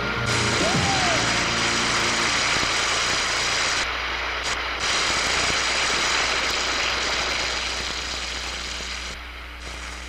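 Studio audience applauding, a dense steady clapping that slowly dies away, with a short sliding whistle about half a second in.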